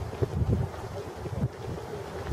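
Wind buffeting the camera's microphone in uneven low gusts over a faint background hiss.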